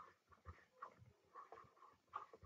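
Near silence: room tone with a few faint short ticks.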